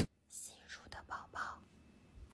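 Soft whispering: a short hiss, then a few quick whispered syllables between about one and one and a half seconds in.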